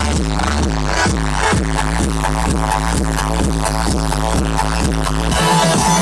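Loud electronic dance music from a live DJ set on a festival sound system, with a steady kick drum at about two beats a second over a deep bass line. About five seconds in, the deep bass drops away as the higher synths swell.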